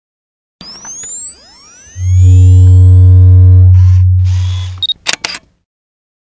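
Logo sting sound effect: sweeping synthetic tones glide in from about half a second in, and a loud, deep steady tone takes over at about two seconds and fades out near five. It ends with a short beep and a few sharp camera-shutter clicks.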